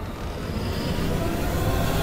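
Trailer sound design: a low rumble with a hiss over it, swelling steadily louder, under a faint held drone.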